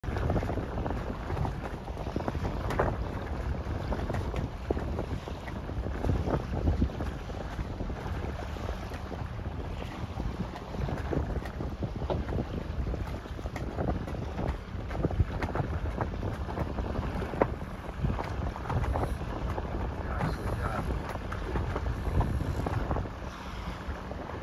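Wind buffeting the microphone: a steady low rumble broken by frequent short gusts.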